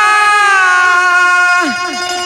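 A male ragni singer holds one long sung note over a steady accompanying tone. About three-quarters of the way through, the voice slides down and drops out while the accompanying tone continues.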